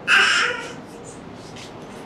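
Baby with a cleft lip giving one short, harsh cry, about half a second long.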